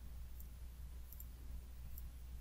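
A few faint computer mouse clicks over a steady low electrical hum.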